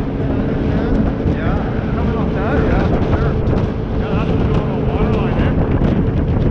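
Jet boat's 6.2-litre V8 running steadily under way, with wind buffeting the microphone.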